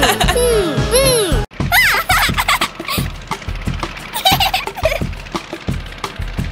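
Cartoon voices giggling and laughing over background music, cut off after about a second and a half; then background music with a steady beat of short strokes, with a couple of brief high vocal squeals.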